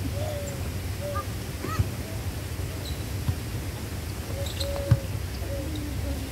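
A volleyball is struck three times in a rally: sharp slaps about a second and a half apart, the last the loudest. A steady low rumble runs underneath, along with short, arched, call-like tones.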